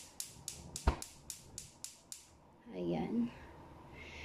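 Gas stove burner's electric igniter clicking rapidly, about four sharp clicks a second for roughly two seconds until the burner lights, with one louder low thump about a second in.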